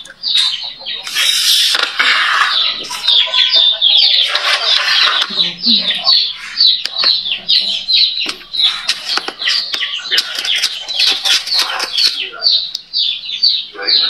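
Birds chirping in quick, repeated short notes, with voices in the background.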